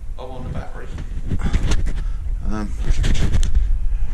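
Two short snatches of a man's voice, with a few sharp clunks and knocks between them, about one and a half and three seconds in, over a steady low rumble.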